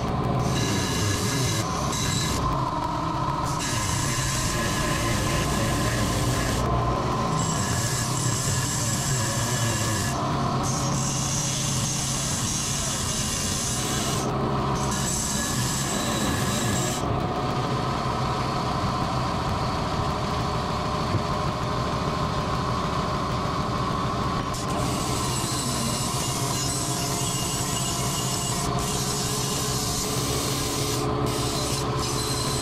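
Handheld grinder with a small abrasive cutoff wheel cutting a notch into the edge of a steel bracket: a steady grinding rasp over the motor's whine. The hiss eases off briefly several times, for longest a little past the middle.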